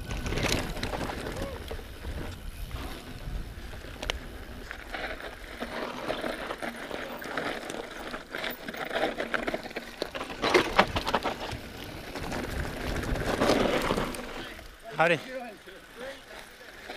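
Mountain bike rolling down a rocky dirt singletrack, heard from a handlebar-mounted camera: tyres on dirt and rock, the bike rattling over bumps, and wind rumbling on the microphone. There are sharp knocks throughout, the loudest about ten seconds in.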